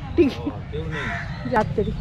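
Crows cawing: a few short, harsh calls in quick succession.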